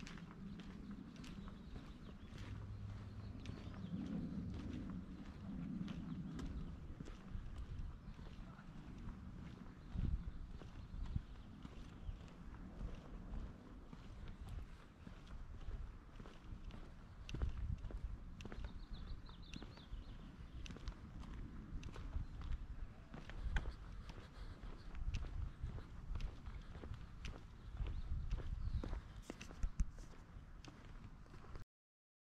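Footsteps of someone walking on a concrete sidewalk: quiet, regular shoe steps at a steady walking pace over faint outdoor background. A low hum sits under the first several seconds.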